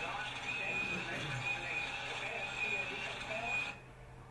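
Soundtrack of a space shuttle film played over loudspeakers in a room: a steady hiss with a faint high tone and faint, distant voices. The sound cuts off just before the end.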